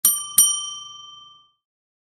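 A small bell struck twice in quick succession, a bright ding-ding whose ringing fades out within about a second and a half: an intro chime.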